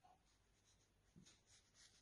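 Near silence with a few faint, brief strokes of a paintbrush on textured watercolour paper.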